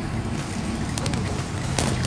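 Steady road and engine noise inside the cabin of a Mitsubishi Xpander, a 1.5-litre MPV fully loaded with seven people, as it swerves sharply, with a few faint clicks.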